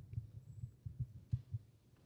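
A series of low, muffled thumps at an uneven pace, a few tenths of a second apart, growing fainter toward the end.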